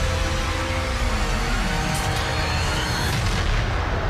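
Dramatic trailer music with heavy booming hits over a deep, steady rumble, as spaceship engine thrusters fire.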